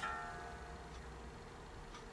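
A single note on an electric guitar, a Les Paul 1960 reissue, rings out and fades over about a second while a string is being tuned, with a steady amplifier hum beneath it.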